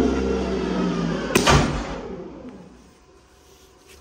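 Break test machine running with a steady hum as it pulls a 3D-printed annealed PETG carabiner, then a single sharp crack about a second and a half in as the carabiner breaks at around 1,230 lb. The machine then winds down and goes quiet.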